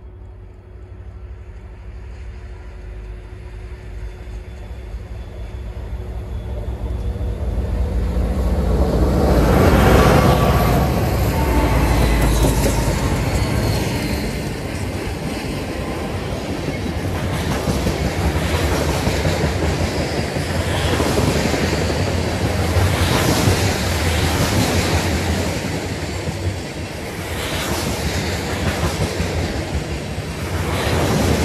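Freight train led by three EMD diesel locomotives, an SD9043MAC and two SD40-2s, approaching and passing at speed: the engine rumble builds to its loudest about ten seconds in. Then a long string of flatcars loaded with continuous welded rail rolls by with steady wheel rumble and clickety-clack.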